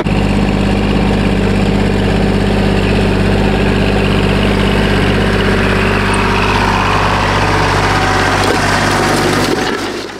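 Kubota compact tractor's diesel engine running at a steady speed while pulling a disc harrow, fading out at the very end.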